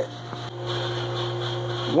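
Steady low hum with a fainter, higher steady tone above it. This is the background drone of the workshop, with no engine running.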